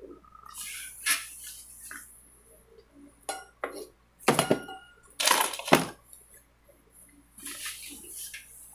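Household objects being handled and set down close to the microphone: a series of sharp knocks and clinks with some rustling, the loudest knocks about halfway through.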